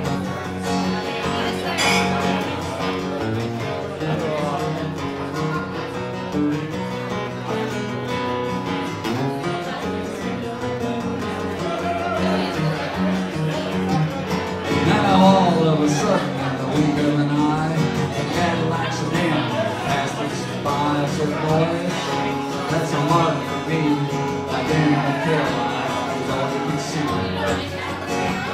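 Solo acoustic guitar playing an instrumental break in a country song.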